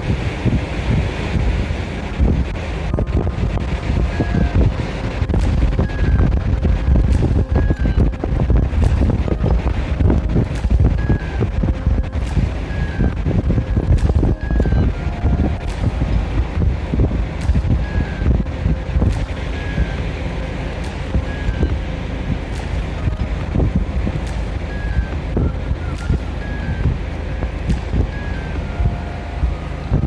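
Wind buffeting a smartphone's microphone outdoors: a loud, steady low rumble, with faint short tones like notes of music running through it.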